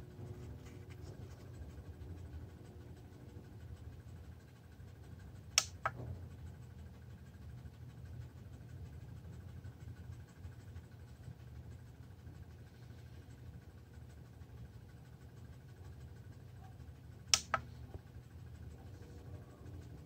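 Two sharp clicks, about twelve seconds apart, from the push button of a bicycle LED tail light being pressed to change its flash setting, over a faint steady low room hum.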